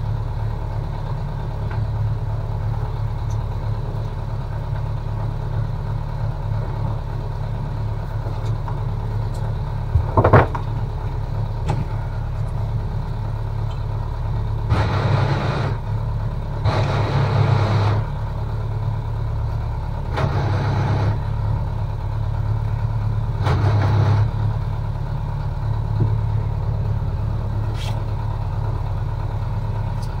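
Towboat's engine idling with a steady low hum, rising in several short surges of throttle in the second third. A single sharp knock about ten seconds in is the loudest moment.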